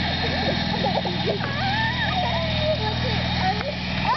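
Children laughing and squealing in short, sliding high-pitched calls, over a steady low motor-like hum.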